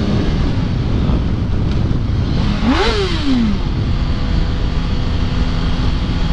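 Yamaha R1 sport bike's inline-four engine running under the rider, with steady wind and road rush. About halfway through, the engine revs up sharply and falls back.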